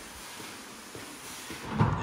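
Heavily loaded push sled stacked with iron weight plates sliding across artificial turf, a steady scraping hiss, with a louder low burst near the end.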